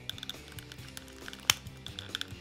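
Small plastic clicks and taps of a 1/6-scale figure head being pressed onto the body's neck joint, with one sharp click about one and a half seconds in as it is pushed firmly into place. Background music plays throughout.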